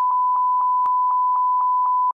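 A steady 1 kHz censor bleep lasting about two seconds and cutting off sharply, laid over a panelist's words to blank out a spoiler.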